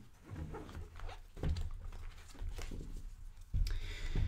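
Oracle cards being handled and spread across a cloth mat: quiet sliding and soft taps of card stock, with a dull thump near the end.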